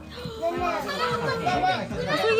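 Young children's voices, talking and playing, with speech throughout.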